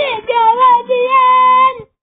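A child's voice singing a short phrase: a rising start, a wavering line, then one long held note that stops suddenly near the end.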